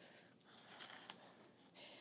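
Near silence, with a few faint soft taps of a chef's knife slicing green bell pepper on a bamboo cutting board.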